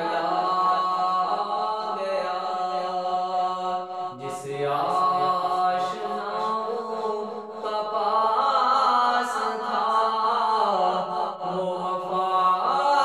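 A man's solo voice singing an Urdu devotional kalaam in long held, ornamented notes, the pitch shifting to new notes a few times.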